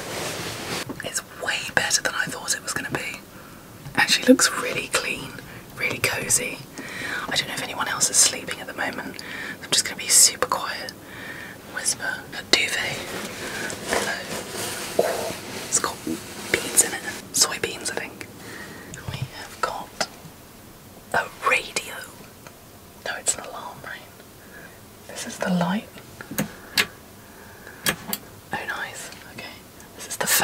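A woman whispering in short phrases with brief pauses.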